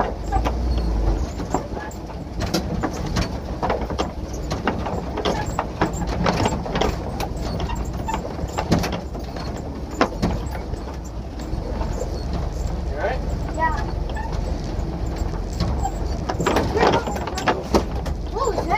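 Toyota FJ40 Land Cruiser crawling over a rocky trail, heard from inside the cab: a steady low engine rumble with frequent knocks and rattles from the body and running gear as it lurches over the rocks.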